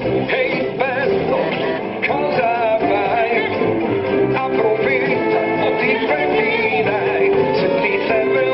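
An animated film's song: a voice singing over a full instrumental accompaniment.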